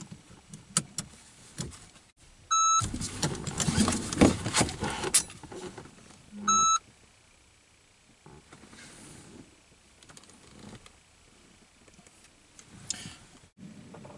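A shot timer beeps twice, about four seconds apart, timing a dry-fire pistol draw from a car seat. Between the beeps come loud clattering and rustling from the seatbelt buckle being released and the body turning and drawing, then quieter handling sounds.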